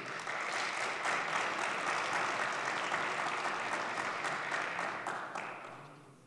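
Applause from members in the parliamentary chamber, a steady wash of clapping that fades away over the last second or so.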